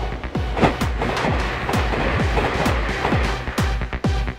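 Background electronic music with a steady kick-drum beat, about two beats a second.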